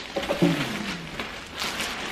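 Plastic packaging bag rustling and crinkling as a jacket is pulled out of it, with a brief falling vocal sound about half a second in.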